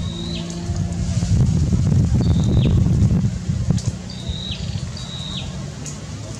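A bird repeating a short high chirp that drops off at its end, four or five times, over a low steady hum. A louder low rumble of noise fills the middle seconds.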